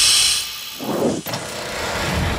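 Logo-animation sound effect: a bright whoosh at the start, then a steady machine-like rush with a low thud about a second in and a small tick just after.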